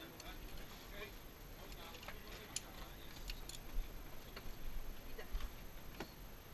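A few light, sharp metallic clicks of guns being handled at a loading table, scattered and irregular, the clearest about halfway through.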